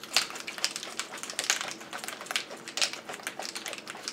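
Ice cubes rattling inside a cocktail shaker as it is shaken by hand: a fast, irregular clatter of sharp clicks.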